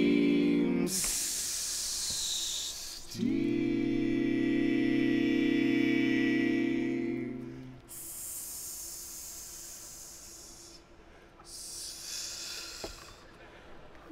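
Barbershop quartet voices: a held four-part chord cuts off and gives way to a long hiss made to imitate escaping steam. A second sustained four-part chord follows, then more, quieter hissing.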